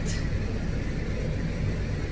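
Cordless electric pet clipper running with a steady low hum, its blade held flat and run through a clipped terrier coat.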